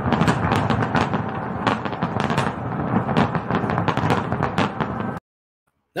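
Fireworks display: a dense, continuous barrage of bangs and crackles that cuts off abruptly about five seconds in.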